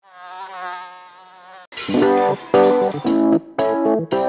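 An insect-like buzzing drone wavers in pitch for about a second and a half and then stops abruptly. Loud music cuts in, its chords starting and stopping in a quick, choppy rhythm.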